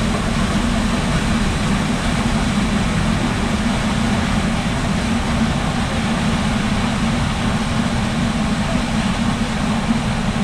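Inflatable raft riding through the water in a water coaster's flume, a steady low rush of water and hull on the slide with no break.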